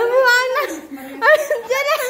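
A high-pitched voice laughing and squealing, its pitch wavering and quivering, with no clear words.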